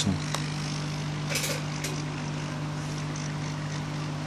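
Hot air rework gun blowing onto a phone circuit board, a steady fan hum with rushing air, as it heats the board to desolder a SIM card connector.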